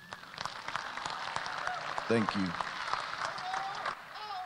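Crowd applauding, with one voice calling out briefly about two seconds in.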